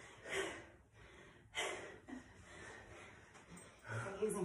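A person breathing hard after a set of exercise reps: two sharp, gasping exhales in the first two seconds, then quieter panting.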